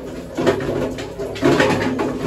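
A bird calling twice with low-pitched calls, echoing in a narrow rock tunnel.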